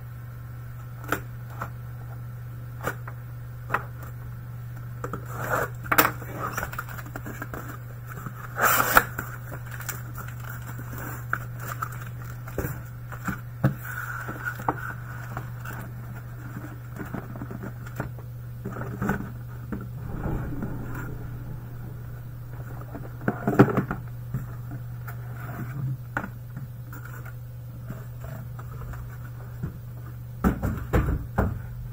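Cardboard shipping case being opened and its sealed hobby boxes handled: scattered scrapes, rustles and knocks of cardboard against cardboard and the table, with one longer scrape about nine seconds in and the sharpest knock past the middle. A steady low hum runs underneath.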